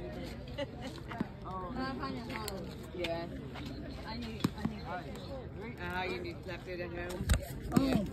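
Voices of people at a ballfield talking and calling out, with no clear words. A loud low thump comes about seven seconds in as the phone is handled against the fence.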